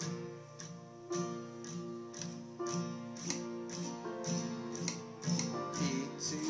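Acoustic guitar, capoed at the third fret, strummed in an even pattern of about two strokes a second, playing an intro chord progression that starts on a G shape and changes chord about every second and a half.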